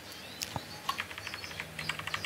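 Computer keyboard keys tapped in a rapid run of light clicks through the second half, arrow keys pressed up and down.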